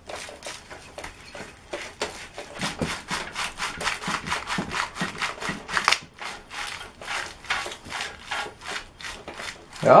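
Deflection yoke being twisted back and forth on a CRT's glass neck, a fast run of rubbing, scraping strokes at about five a second as its melted plastic and glue give way.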